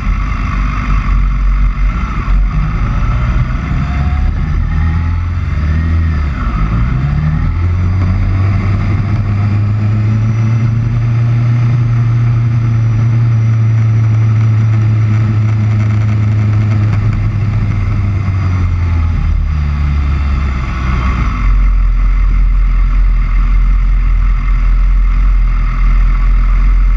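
Motorcycle engine running while riding, over steady wind and road noise. The engine note shifts up and down in the first several seconds, then holds steady for a long stretch.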